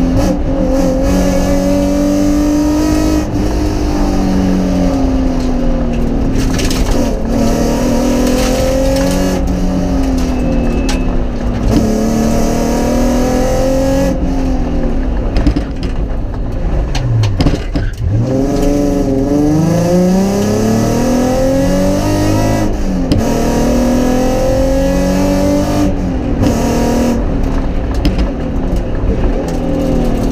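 Rally car's engine heard from inside the cabin at stage pace, revving up and dropping back with each gear change. About halfway through the revs fall sharply to a low point, then climb again through the gears.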